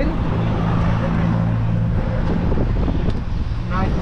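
Road traffic: a nearby vehicle's engine running with a steady low hum that fades away about two and a half seconds in, over continuous street noise.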